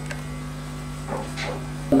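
A steady low electrical hum, with a brief faint voice about a second in.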